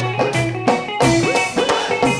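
Live Punjabi bhangra band playing an instrumental passage between sung lines: drums keep a quick steady beat under keyboard and guitar.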